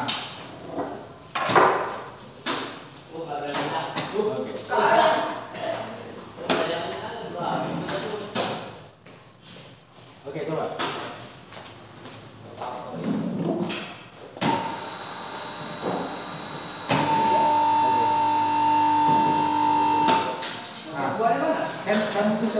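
Small three-phase induction motor switched on with a click and running with a steady electric hum and whine. About two and a half seconds later it steps up louder, typical of the star-to-delta changeover of a star-delta starter. It cuts off suddenly about 20 seconds in.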